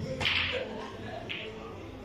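Snooker cue striking the cue ball with a sharp click, followed by another sharp click about a second later as the balls collide on the table.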